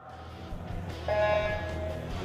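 Electronic swim-start signal: one steady beep about a second in, held for nearly a second, sounding the start of a race over the low hubbub of a pool hall.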